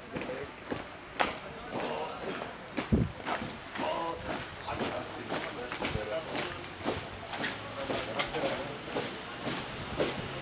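Footsteps of a column of soldiers in boots marching on hard pavement, many footfalls overlapping, with voices over them.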